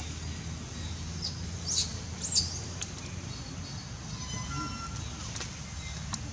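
Outdoor ambience: a steady low rumble with two quick, sharp, high-pitched chirps about two seconds in, then a few faint thin tones.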